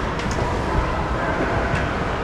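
Steady rumbling background noise of an indoor ice arena, with a few faint clicks.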